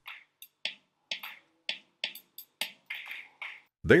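GarageBand's SoCal software drum kit playing back a short pattern programmed in the piano roll: a run of light, quick drum and cymbal hits, a few each second, with little low end.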